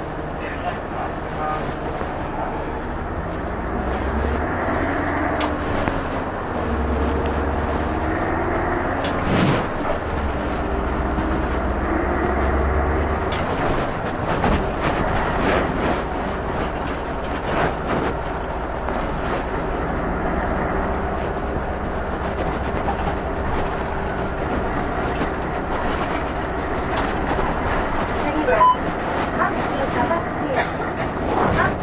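Inside a diesel city bus under way: the engine note rises several times in steps as the bus pulls through its gears, over a low road rumble. Scattered knocks and rattles come from the bus body.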